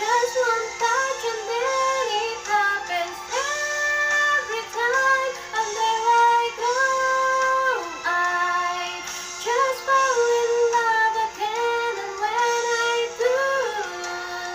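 A woman singing a slow ballad melody over music accompaniment. She holds notes for about a second each and slides between them, over a steady low note sustained underneath.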